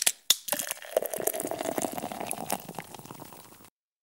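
Two sharp clicks, then a crackling, fizzing liquid sound that fades away over about three seconds.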